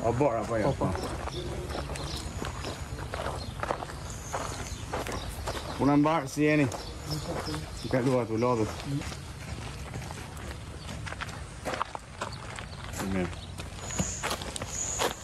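Voices talking in short stretches, in Albanian, with footsteps and a steady outdoor background between the phrases.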